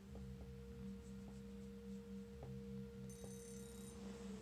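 Domestic cat purring close to the microphone, a low pulsing rumble, over a faint steady tone.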